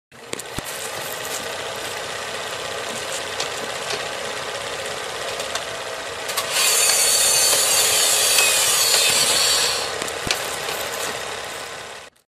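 A steady mechanical whirring with scattered clicks and crackles. It grows louder and hissier for about three seconds from halfway through, then eases back.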